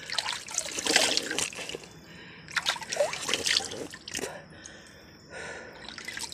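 Spring water splashing as cupped hands scoop from a thin trickle and throw it over the face, in two main bursts about a second in and about three seconds in, with the spring trickling quietly between.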